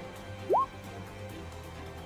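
Background music, with a single short rising electronic 'bloop' sound effect, like a water drop, about half a second in.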